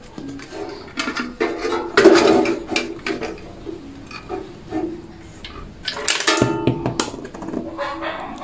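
Background music, with a metallic clatter about two seconds in as a 10-peso coin drops through the coin acceptor of a carwash vendo timer box and is counted, plus clicks of the box being handled.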